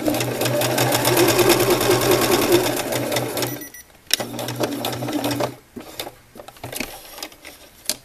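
Baby Lock Xscape BL66 electric sewing machine stitching a hem at speed: a fast, even run of needle strokes over the motor's steady hum. It stops about three and a half seconds in, runs again briefly, and stops a little past halfway, followed by a few light clicks.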